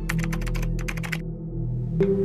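Rapid key-click typing sound, about a dozen clicks in just over a second, then stopping, over a steady low music drone.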